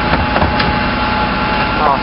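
Refuse collection truck's engine and hydraulic bin lift running steadily as a bin is raised to the hopper, with a faint steady whine over the engine's hum.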